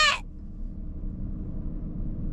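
Low steady rumble and hum of a car's idling engine, heard from inside the cabin.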